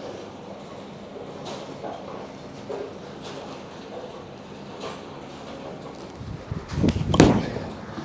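A Radical Outer Limits bowling ball is released and lands on the lane with a thud about seven seconds in, then starts rolling with a low rumble. Before that, only quiet room tone.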